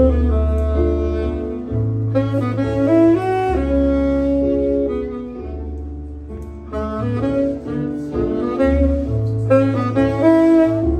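Saxophone playing a slow melody of held notes, accompanied by an electronic keyboard sustaining low bass notes and chords.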